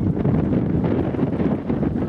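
Wind buffeting the camera's microphone: a steady, loud low rumble.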